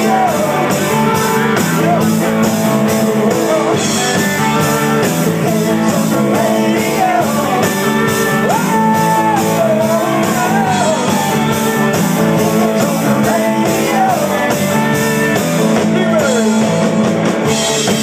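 Live rock band playing loud: electric guitars and bass over a steady drum-kit beat, with a lead line whose notes bend up and down.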